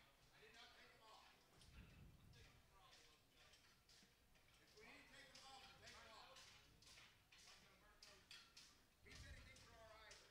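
Near silence: faint background talk with a few light scattered knocks and two brief low rumbles.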